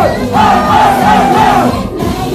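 Concert audience shouting a call in unison over the song's backing music: one long held shout that breaks off just before the end.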